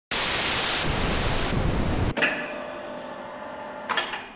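Electronic logo sting: a loud burst of static-like noise that shifts character twice, then cuts off abruptly about two seconds in to a quieter, steady electronic chord of several tones. A short accent comes near the end, as the chord fades away.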